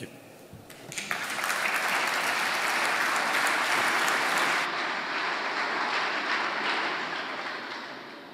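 Audience applauding: the clapping starts about a second in, swells, then fades away toward the end.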